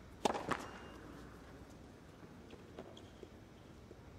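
Tennis serve: the racquet strikes the ball, with a second sharp impact of the ball about a quarter second later, then a few faint taps of the ball a couple of seconds on, in a quiet stadium.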